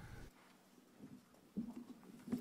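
Quiet room tone with a few faint knocks and shuffles, about a second in and again near the end.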